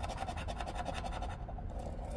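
A scratch-off lottery ticket being scratched with a coin-shaped scratcher: quick back-and-forth rubbing strokes of the edge across the latex coating, easing off briefly about a second and a half in.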